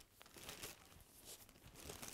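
Faint rustling of a thin black plastic bin bag as balls of yarn are handled inside it.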